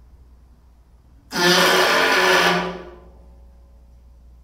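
Experimental noise music: a sudden loud blast of dense, hissing noise with a low pitched drone under it, about a second and a half long, fading away over a low background hum.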